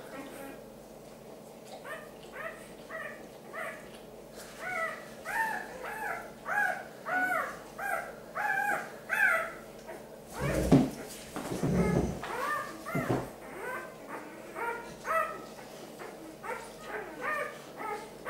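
Newborn puppies crying in short, high, rising-and-falling squeals, one or two a second. Around the middle the squeals stop for a few seconds while loud dull rubbing and bumping sounds take over, from the pup and its bedding being handled.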